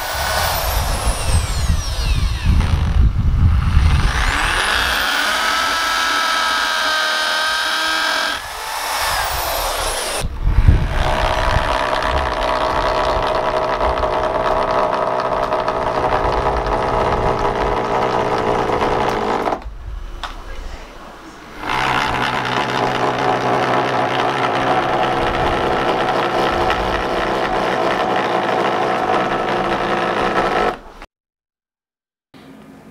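Corded electric drill boring pilot holes and driving screws down through a softwood sawhorse top into the legs. The motor runs in long stretches with short breaks between them, and its whine rises in pitch as it speeds up a few seconds in.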